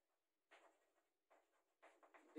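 Chalk writing on a blackboard: a few faint, short strokes, otherwise near silence.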